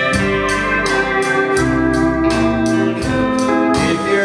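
Live country band playing an instrumental passage between sung lines: held lead notes over bass and drums, with a steady cymbal beat.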